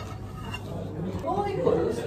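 Indistinct talk in a small restaurant: quiet for the first second, then a voice speaking from about a second and a half in.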